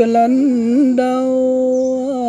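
A single voice singing a Muong folk song, with no instruments: small wavering turns for about a second, then one long held note.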